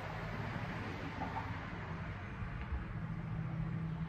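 Steady low hum with an even hiss underneath, a constant background drone.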